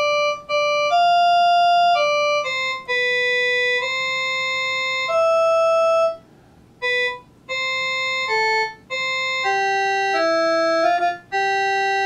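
An organ-like electronic keyboard tone playing a slow melody of held single notes. Each note sounds steadily without fading and starts and stops abruptly, with a few brief silences between phrases.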